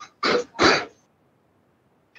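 A person clearing their throat twice in quick succession into a video-call microphone, within the first second.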